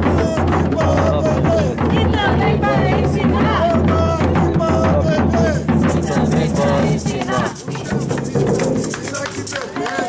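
Group percussion: large rope-tensioned drums beaten with sticks and shaken rattles, with several voices sounding over the playing. The rattles grow brighter and denser in the second half.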